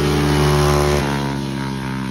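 A racing go-kart's small engine running at speed as it passes close by, its pitch dropping slightly and the sound fading after about a second as it moves away.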